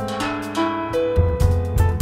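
Instrumental music from a piano–bass–drums jazz trio: a melody of clear single notes over deep bass notes, with drum and cymbal hits.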